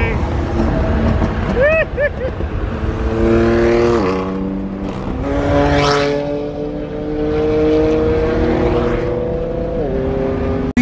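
BMW M3 engine heard from inside the cabin at freeway speed. Its pitch drops at an upshift about four seconds in, climbs steadily as the car pulls through the next gear, then drops again at another upshift near the end. A brief rushing sound comes about six seconds in.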